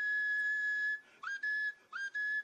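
A high, steady whistle: one long note held for about a second, then a shorter note and the start of another, each swooping quickly up into the same pitch.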